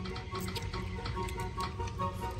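Phone spin-the-wheel app ticking as its wheel spins, over light background music.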